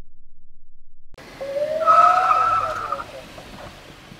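Car tyres squealing as a car brakes to a stop: a sudden skid about a second in, with a rising squeal and then a held high screech that fades out after about a second and a half.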